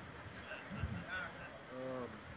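Quiet room tone in a pause in conversation, broken by faint, brief voice sounds, including a short hummed "mm" near the end.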